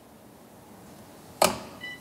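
A single sharp clack of a wooden shogi piece set down on the board about one and a half seconds in, with a short faint beep just after it.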